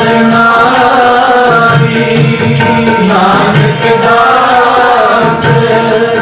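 Gurbani kirtan: men singing a shabad in a slow chant-like line over sustained harmonium chords, with tabla strokes keeping a steady rhythm.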